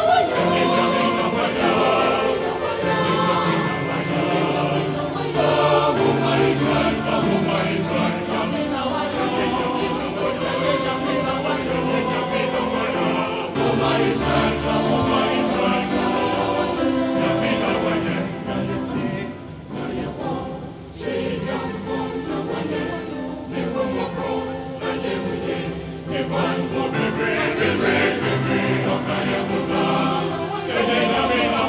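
Mixed choir of men's and women's voices singing a Ghanaian choral piece in Twi, with a male soloist's voice at a microphone near the start. The singing dips briefly in loudness about two-thirds of the way through.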